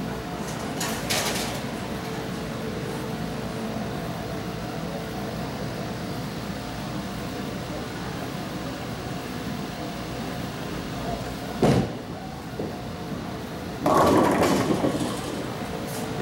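Bowling alley: a steady rumble of ball and lane machinery, then a sharp crack as a bowling ball hits the pins about twelve seconds in, followed by a longer clatter of pins about two seconds later.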